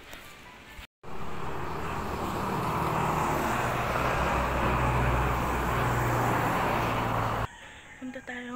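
A motor vehicle running close by: a steady engine hum with a loud noisy rush, swelling slightly in the middle and cutting off suddenly near the end. Before it, in the first second, there are faint footstep clicks, then a moment of dead silence.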